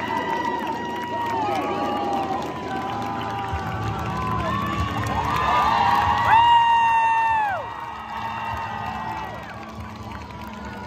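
Crowd of high-school students cheering and screaming, many long high-pitched yells overlapping. One loud scream close by, from about six seconds in, lasts over a second, and the cheering then dies down somewhat.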